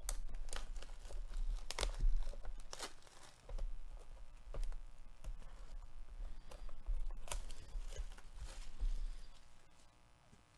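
Plastic shrink-wrap being torn and peeled off a cardboard trading-card box, in irregular crinkling crackles that die away near the end.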